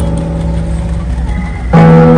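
Live guitar music through a sound system: a quieter passage over a low steady hum, then the guitar and band come in loudly near the end.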